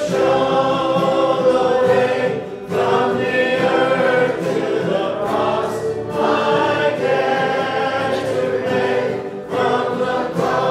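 A worship song sung by a group of voices, led by two men, with acoustic guitar accompaniment; long held lines broken by short pauses between phrases.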